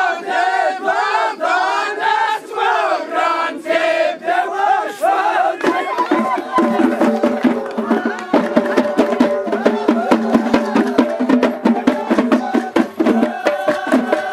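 A troupe of men singing the Amazigh Ajmak chant together in sliding, call-like phrases. About six seconds in, large hand-held frame drums come in with a quick, steady beat under the voices.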